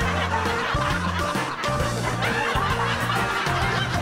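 Upbeat background music with steady bass notes, and people laughing and snickering over it.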